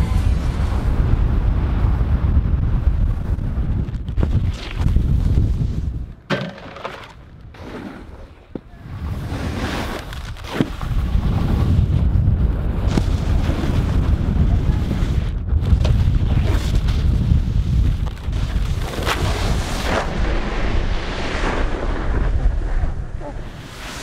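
Wind buffeting the microphone of a camera moving down a ski run, a heavy low rumble over the scrape of snowboards sliding on packed snow. The rumble drops away between about six and nine seconds in, and a few sharp knocks stand out.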